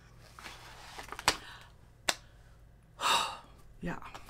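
A paper shopping bag rustling as a hand rummages inside it, with two sharp clicks of plastic bottles knocking together. About three seconds in comes a loud, breathy gasp.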